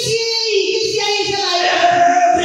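A woman singing a long held note through a microphone and PA, with a steady low beat underneath.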